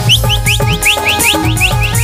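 Live Nagpuri stage-band music: a quick run of short, rising, high-pitched chirps, about five or six a second, over a steady drum and bass beat.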